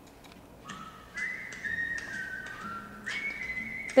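Whistling: a few long held notes that step up and down in pitch, with faint clicks in between.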